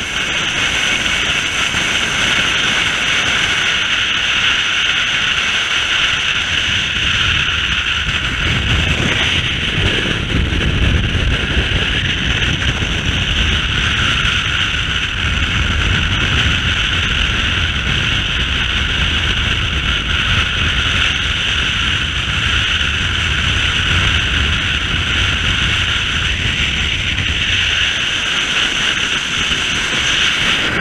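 Steady wind rush and road noise at highway speed, picked up by a camera mounted on the outside of a moving car.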